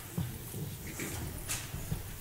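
Footsteps and shuffling of several people walking across the church floor, as irregular soft thumps with a few light knocks and rustles.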